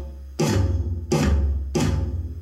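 Electronic drum kit struck in three loud accented hits, the first about half a second in and then about three-quarters of a second apart. Each hit is a deep drum boom under a bright wash that rings and fades.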